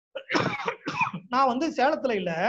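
A man's short cough about a third of a second in, then he goes on speaking.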